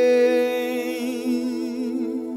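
A singer holding one long vocal note with vibrato, the drawn-out closing note of a slow acoustic cover.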